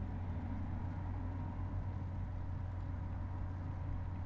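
Steady low background hum with a faint high steady tone above it, even throughout with no clicks or changes.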